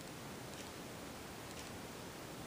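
Faint, steady room tone: a low even hiss with no distinct sound in it.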